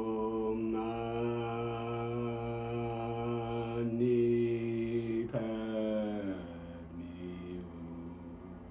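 A droning chant of long held notes that shifts pitch a few times, growing quieter and lower over the last couple of seconds.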